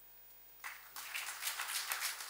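Audience applause, breaking out suddenly after a short pause at the end of a speech and carrying on as many hands clapping.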